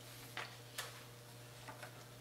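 A few faint, light clicks from a plastic laminating pouch being handled, over a steady low hum.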